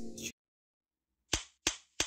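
Background music cuts off into dead silence, then two sharp cracks about a third of a second apart, the sound effects of an edited-in cartoon clip.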